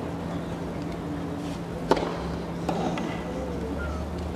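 A tennis ball struck by a racket: one sharp pop about two seconds in, the loudest sound here, with a fainter knock shortly after, over the steady hum and low murmur of a stadium.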